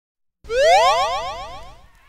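A springy, boing-like sound effect: a quick run of rising pitch glides that starts about half a second in and fades away over about a second and a half.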